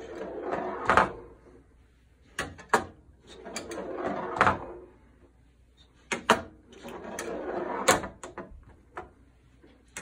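Steel pinball rolling on the playfield of an Avengers pinball machine: flipper clacks shoot it up toward the Black Panther shot, and it rolls back down, ending in a sharp knock. This happens three times: the shot fails to clear, and the rollback is what the player nudges the machine to save.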